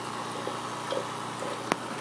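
Aquarium bubbler (air stone) bubbling steadily, with one sharp click near the end.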